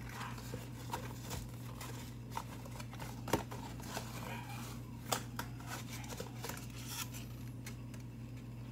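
Hands handling medal packaging of card and paper: faint rustling with a few sharp clicks and taps, over a steady low hum.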